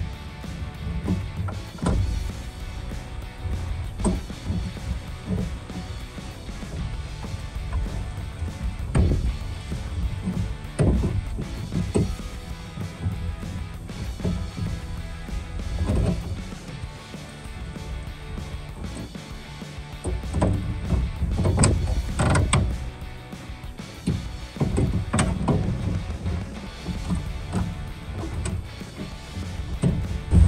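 Background music with scattered clicks and knocks from needle-nose pliers working the plastic retaining clips of a truck grille, busiest in the last third.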